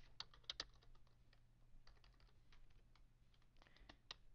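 Faint typing on a computer keyboard: a quick run of keystrokes in the first half-second, then scattered single taps, over a faint steady low hum.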